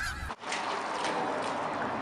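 A flock of snow geese honking, cut off suddenly about a third of a second in, followed by a steady rushing noise with no distinct pitch.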